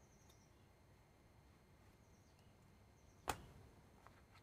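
Near silence with room tone, broken by one sharp click a little after three seconds in, along with a few very faint high chirps.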